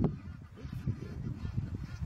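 An African elephant under attack by lions gives a brief trumpeting call right at the start, followed by low, irregular rumbling noise.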